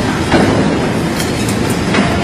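Loud, steady mechanical clatter and rumble from running machinery.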